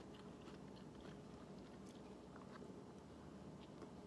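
Near silence, with faint chewing of a mouthful of Snickers salad: apple and candy bar pieces in whipped pudding.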